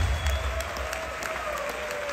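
Audience applauding in a hall as the band's accompaniment stops at the start.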